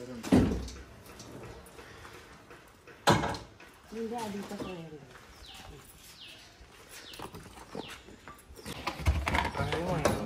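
Potted plants being handled and set down on a vehicle's bed: two heavy thumps about three seconds apart, the first just after the start. A bird chirps repeatedly with short falling calls through the second half, with brief voices alongside.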